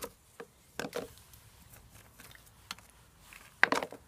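Dry twigs being handled and put into a plastic tub: a few light knocks about a second in, then a louder quick clatter of clicks near the end.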